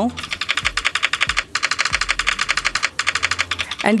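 A rapid run of simulated mechanical-keyboard key clicks, about ten a second with two brief pauses, played from a phone's speaker by an on-screen keyboard app's 'Mechanical Key Three' keypress sound as each key is tapped.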